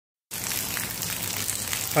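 Light rain falling on an open umbrella held just overhead: a steady hiss with faint ticks of drops.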